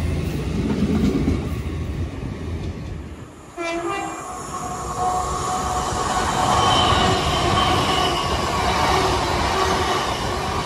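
A GWR High Speed Train rolling past, its low running drone fading away. Then a Hitachi Class 800 intercity train comes through with a brief horn blast as it arrives, followed by steady wheel and running noise with a faint whine as it passes.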